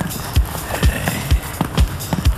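Hi-NRG disco drum beat in a sparse stretch of the track: a steady kick drum at about two beats a second with crisp clicking percussion between the kicks.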